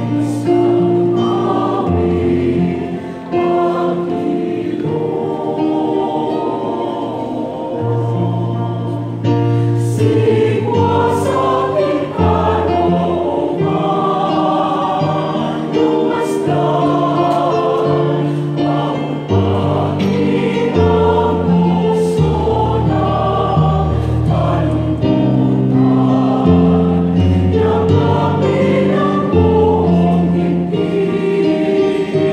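Mixed choir of men and women singing a hymn in sustained chords, with held notes changing every second or two. A keyboard plays a steady low bass line beneath.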